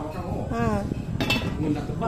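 A metal pot lid clinks once against a large aluminium cooking pot about a second in, with a short ring.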